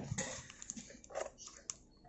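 Faint crinkling and scattered clicks of a parcel wrapped in clear packing tape being handled, with a short muffled sound about a second in.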